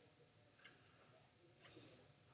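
Near silence: faint room tone with a few tiny ticks.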